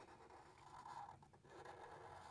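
Faint scratching of a Sharpie marker tip drawing lines on paper, barely above near silence.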